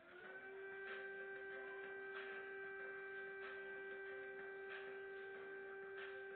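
Air-raid siren sounding an air-attack warning: its pitch rises briefly at the start, then holds one steady note.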